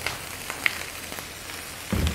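Chopped onions sautéing in a little canola oil in a pan on high heat: a steady sizzle with a few faint crackles.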